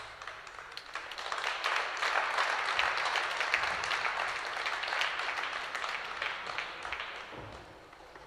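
Audience applauding, building about a second in and dying away near the end.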